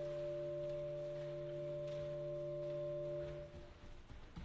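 Organ holding a steady chord of several notes, all released together about three and a half seconds in.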